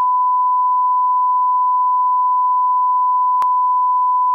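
Steady 1 kHz line-up test tone, a single pure beep played with colour bars as a video reference signal. A brief click cuts through it about three and a half seconds in.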